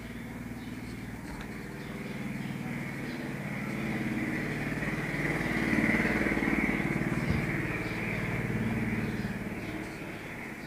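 A motor vehicle engine running past: it grows louder to a peak about six seconds in, then fades.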